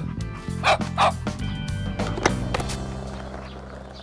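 A small dog barking a few short times in the first half, over soft background music that fades toward the end.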